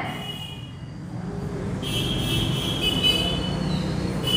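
A low, vehicle-like rumble that swells after about a second and then holds steady, with a steady high-pitched whine heard briefly at the start and again for about a second and a half in the middle.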